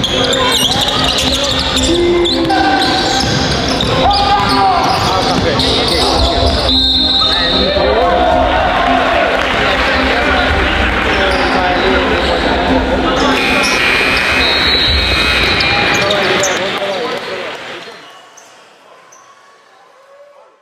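Basketball game sound in a gym: the ball bouncing on the hardwood with players and the crowd shouting, and a couple of brief high squeals. It fades out near the end.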